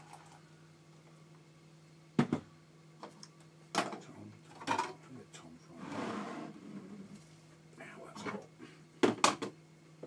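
Scattered sharp knocks and clunks of kitchen items being handled and set down, a few seconds apart with a quick double knock near the end, and a brief rustle around the middle. A steady low hum runs underneath.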